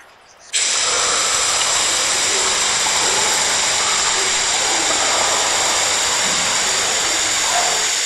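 Sound effect of gas spraying out under pressure: a loud, steady hiss that starts about half a second in and cuts off suddenly near the end.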